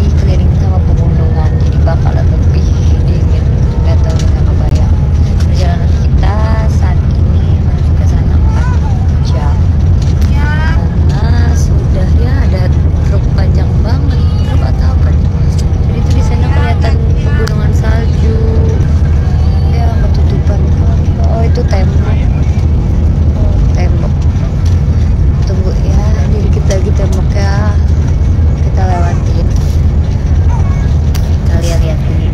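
Steady low rumble of a coach bus on the move, heard from inside the passenger cabin, with a woman's voice talking over it.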